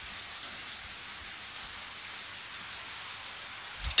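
Steady faint hiss of background room noise, with a few soft ticks.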